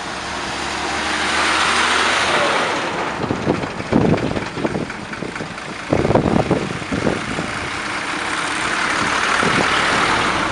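Road traffic: vehicles passing by, their engine and tyre noise swelling about a second in and again near the end, with a few short low thumps in between.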